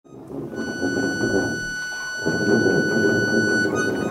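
Live improvised music with tuba and accordion playing together, fading in from silence at the very start, with one high note held steadily above the low playing.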